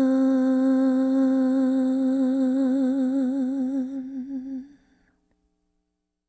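A single unaccompanied voice holding one long closing note of the hymn, hummed or sung on a vowel, steady at first and then with a widening vibrato, fading out and stopping a little under five seconds in.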